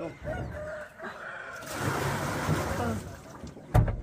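Large black plastic tubs being handled in a pickup truck bed, with one loud thump near the end as a tub is set down.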